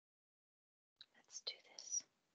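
Dead silence on the call line, then about a second in, faint whispered or murmured speech with strong hissing sounds.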